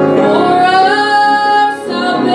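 A woman singing a hymn to piano accompaniment, holding a long note that breaks off briefly near the end.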